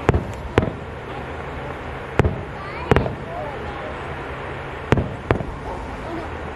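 Aerial fireworks shells bursting: six sharp bangs, roughly in pairs, about a second in, at two and three seconds, and near the end.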